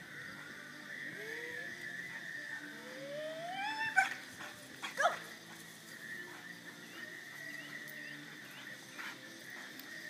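A dog whining in rising, drawn-out whines, the longest about three seconds in, then two short sharp barks about four and five seconds in, as it is held and then released to run the agility jumps.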